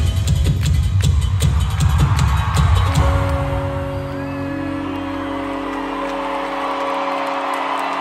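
Live pop band music played loud through an arena PA: heavy bass and drum hits for about three seconds, then the beat drops out and leaves a held sustained chord. Over it the crowd cheers and whoops.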